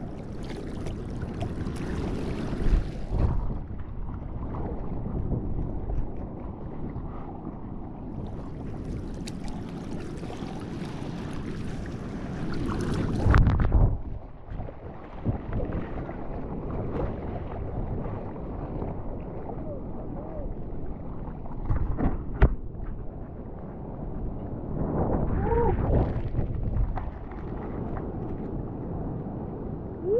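Sea water rushing and splashing over a bodyboard and the camera on it as the rider paddles and then rides a breaking wave's whitewater, with wind buffeting the microphone. Two spells of hissing spray, the louder one building to a surge about a third of the way in.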